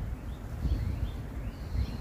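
Outdoor background: a low, uneven rumble of wind on the microphone, with faint short bird chirps and a thin high note held for about a second in the middle.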